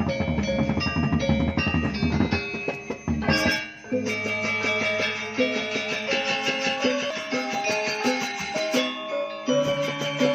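Balinese gamelan gong ensemble playing: bright bronze metallophone notes with drums and gongs. A little before halfway the dense low drumming drops out, leaving a repeating pattern of struck metallophone notes over a held low hum.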